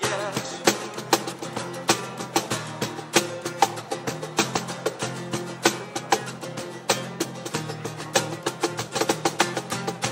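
Acoustic rock band playing: strummed steel-string acoustic guitars and a bass guitar over a cajón slapped in a fast, even rhythm.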